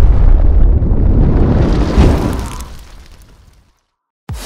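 Explosion sound effect for an animated fireball: a loud, deep rumbling boom with a second, sharper hit about two seconds in, fading out over the next second or so.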